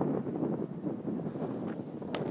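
Uneven low rumble of wind and rustling on a body-worn microphone.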